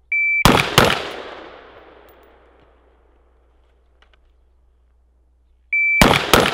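A short, high electronic shot-timer beep, then two rifle shots from a Tommy Built T36C (a civilian G36C clone in 5.56 NATO) about a third of a second apart, their echo fading over a couple of seconds. Near the end another beep sounds and the next shot follows.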